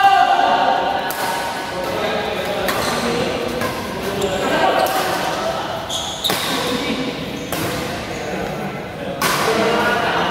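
Badminton rally in an echoing sports hall: sharp racket-on-shuttlecock hits every second or two, with voices calling across the hall.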